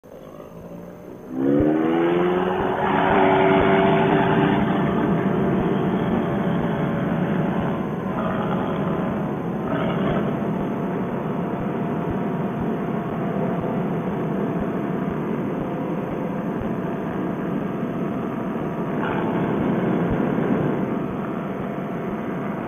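Fresh Breeze Monster paramotor engine and propeller throttled up about a second and a half in, rising in pitch to full power, then running steadily at full throttle for the trike's takeoff roll across grass.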